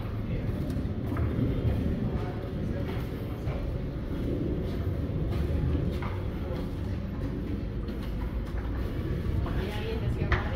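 Footsteps on a stone tunnel floor and stone stairs, faint knocks about once a second, over a steady low rumble.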